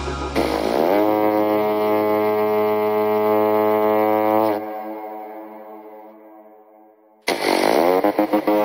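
Psytrance track at a breakdown: the beat drops out and one sustained horn-like synth note slides up in pitch, holds steady, then fades almost to silence. The full track with its beat comes back in suddenly near the end.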